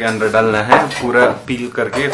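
Metal pots and cooking utensils clinking and clattering as food is cooked at a stove, under a man talking.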